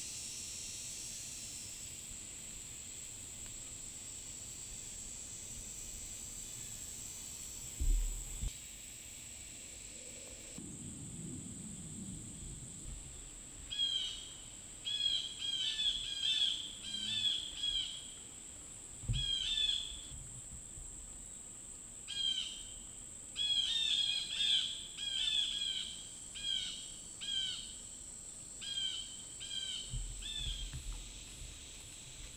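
A steady high-pitched insect drone runs throughout. From about halfway on, a bird sings short chirping phrases over and over. Two dull thumps come about a quarter of the way in and at about two-thirds, the first being the loudest sound.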